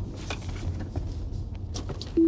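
Low, steady road and tyre rumble inside an electric car's cabin as the Tesla rolls at about 20 mph and slows, with a few faint clicks.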